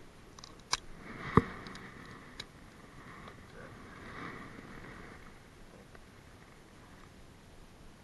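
A green crab being broken in half by hand for bait: a few sharp cracks of shell, the loudest about a second and a half in, over faint handling noise.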